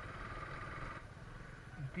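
Motorcycle engine running at low speed, a steady low rumble, with a faint haze of wind and road noise.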